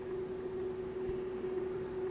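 A steady low hum on one held note with a background hiss, constant throughout.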